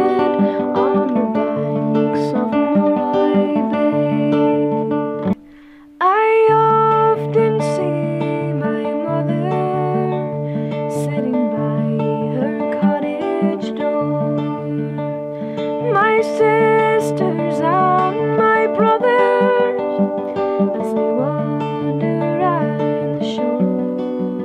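Steel-string acoustic guitar playing a folk song, with a woman's voice singing over it. The music breaks off for about half a second roughly five seconds in, then picks up again.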